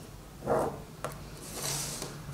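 Ballpoint pen drawn along a plastic ruler on brown paper, a faint scratchy rubbing, with a soft knock about half a second in as the ruler is handled.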